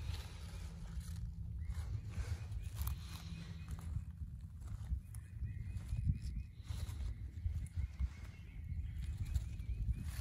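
Wind rumbling on the microphone, with rustling and crackling of wild leek leaves and dry leaf litter as a hand handles the plants. A faint, thin high tone runs under it from about two seconds in.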